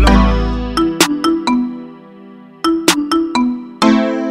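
Instrumental outro of a hip-hop beat: the bass fades out at the start, leaving a synth melody of short notes in two phrases, with a brief dip between them.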